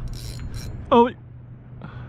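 A man's single drawn-out "Oh" of surprise, falling in pitch, about a second in. A steady low hum runs underneath, and there is a brief high hiss near the start.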